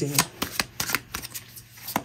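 A deck of oracle cards being shuffled by hand: a quick, irregular run of card-edge clicks and flutters.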